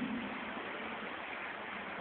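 Steady outdoor background noise of a crowded city street, an even hiss with no clear voices or distinct events.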